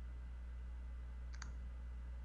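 A steady low electrical hum with a single short, faint click about one and a half seconds in.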